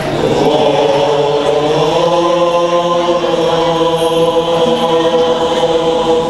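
Male voice singing a qasidah melody in long, held notes that waver slowly in pitch, with no break.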